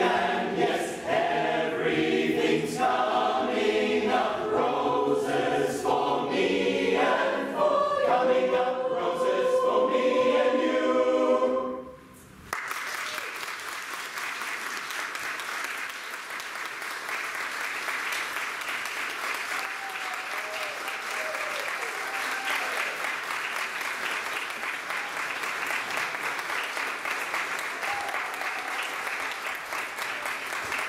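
A mixed choir of men's and women's voices singing in harmony, stopping abruptly about twelve seconds in. Audience applause follows and runs on steadily.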